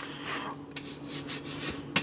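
Fingers rubbing and shifting grip on the plastic top cover of a Cryorig CX6 tower CPU cooler, a soft scratchy handling noise with a few light clicks.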